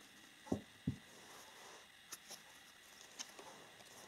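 Faint handling of oracle cards as one is drawn from the deck: two brief soft sounds about half a second apart near the start, then a few light clicks and a low rustle.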